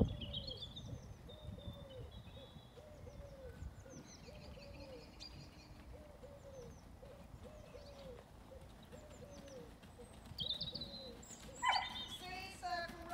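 A dog barking over and over at an even pace, about four barks every three seconds, stopping about ten seconds in, with small birds chirping and twittering high above it.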